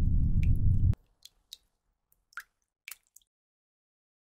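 A loud low rumbling drone cuts off suddenly about a second in. Then water drips from a kitchen tap: about five faint, sharp plinks at uneven intervals.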